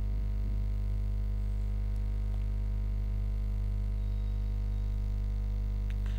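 Steady electrical mains hum: a constant low buzz that does not change.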